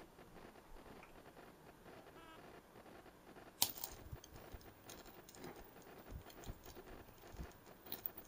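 A sharp click near the middle, then faint, irregular crackling from a high-voltage arc across a small home-made spark gap fed by a flyback transformer and a 555-timer driver.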